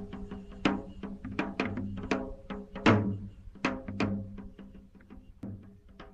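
Percussion music: irregular pitched drum strokes, each ringing and dying away over a held low note. The strokes thin out and grow quieter over the last second and a half.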